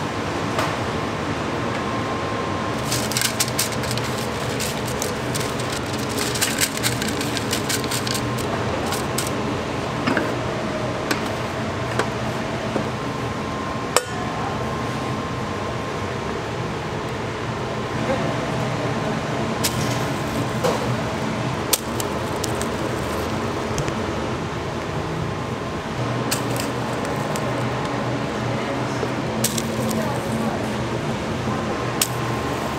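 Bakery workroom noise: a steady machine hum with scattered clinks and knocks of a steel mixing bowl, spatula and cake tins as sponge batter is scraped and poured.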